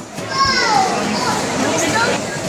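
A young girl's high-pitched excited squeal, falling in pitch, about half a second in, over children's voices and background chatter.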